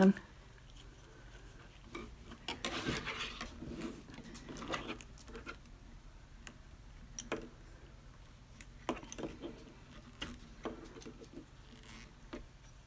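Baling wire being coiled by hand around a wooden dowel: irregular small clicks and scrapes of wire on wood and fingers, with a louder scraping rustle about three seconds in and again near five seconds.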